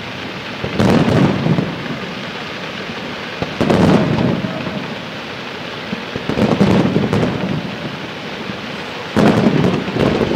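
Fireworks aerial shells bursting in four loud booms about three seconds apart, each trailing off in a rolling rumble, with the noise of the display filling the gaps.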